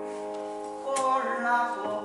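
Grand piano accompaniment: a held chord fades away, then a new chord is struck about halfway through and a short line of notes follows.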